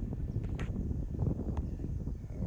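Wind buffeting the microphone, a steady low rumble, with a few faint clicks about half a second and a second and a half in.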